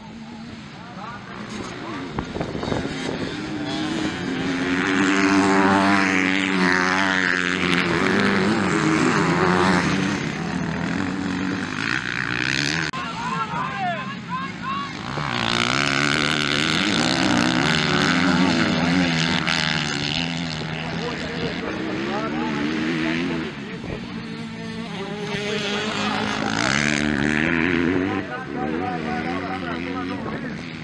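Motocross bike engines revving hard through the turns of a dirt track, their pitch rising and falling with each throttle blip and gear change. The engine sound swells three times as bikes pass close.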